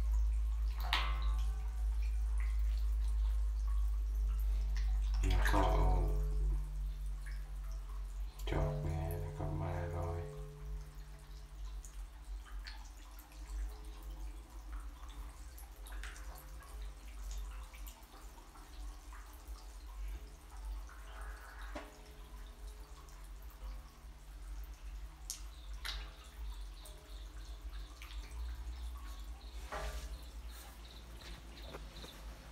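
Scattered small drips and plops of water as young catfish crowd a water-filled jar and break the surface, over a steady low hum. The sound is louder and busier in the first ten seconds, with two fuller patches about five and nine seconds in.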